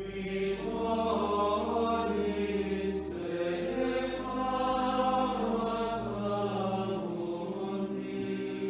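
Background music: a choir singing slow chant over long held low notes that change only a few times.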